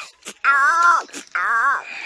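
A person's voice making two wavering, wail-like vocal calls, each under a second long, with pitch rising and falling, not words.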